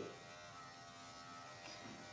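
Electric dog clipper with a #9 blade running with a faint, steady buzz as it trims the hair on the back of a cocker spaniel's skull.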